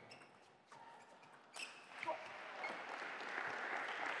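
A table tennis ball knocking sharply off bats and table in a fast rally. Light applause then builds as the rally ends.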